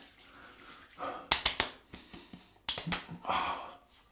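Hands slapping aftershave onto the face and neck: a quick run of sharp slaps a little over a second in and another couple near three seconds.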